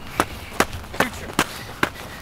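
Footsteps of sneakers on a gravelly dirt trail: five sharp, even steps, about two and a half a second.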